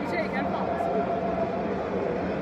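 Stadium crowd noise: a steady din of many voices in the stands, with a brief nearby voice near the start.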